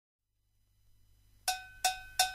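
Near silence, then two strikes on a cowbell about a second and a half in, each with a short metallic ring, opening the song.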